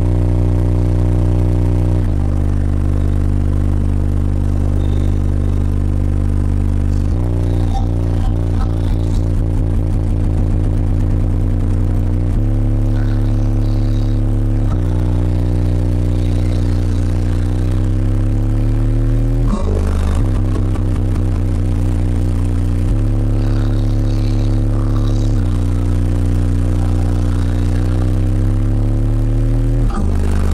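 Bass-heavy music played loud through a high-power car audio system with Skar subwoofers, heard inside the truck's cab. Long held bass notes change pitch every two or three seconds, with rising glides twice.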